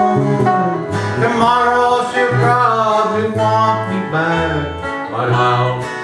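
A small country band playing an instrumental stretch at a steady two-beat: electric bass walking low notes, with electric and acoustic guitars strumming and a lead line sliding in pitch over the top.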